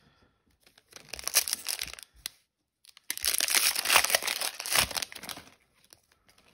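A Magic: The Gathering booster pack's plastic wrapper being torn open and crinkled, in two bouts: a shorter one about a second in, and a longer, louder one from about three seconds in.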